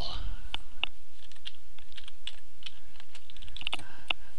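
Typing on a computer keyboard: a run of irregular short key clicks, some in quick clusters, as the words "select all" are typed. A steady low hum lies underneath.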